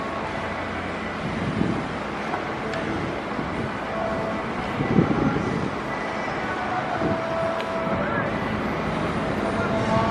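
Outdoor practice-field ambience: a steady background hum with short, distant shouted voices now and then, the loudest about halfway through.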